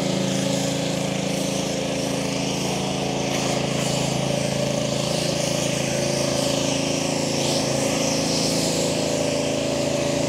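EUY 1500 W electric bike's motor humming steadily at an even cruising speed, with wind and tyre noise.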